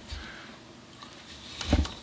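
Quiet handling of a small wooden workpiece at a workbench, with a few light clicks and knocks near the end.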